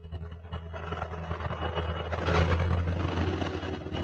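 A low motor hum with a rushing noise that builds to its loudest a little past halfway, then stops abruptly.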